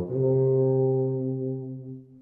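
Tuba holding one long, steady note in its low-middle range, which fades away near the end.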